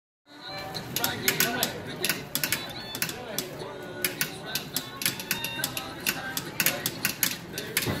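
Rapid, irregular clicking and clacking from a coin-op style marionette dance machine as its console buttons are pressed and the Woody puppet jerks about on its strings.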